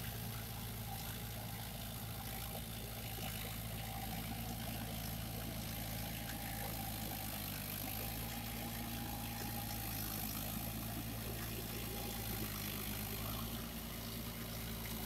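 Farm tractor's diesel engine running steadily under load as it pulls an implement through a flooded paddy field.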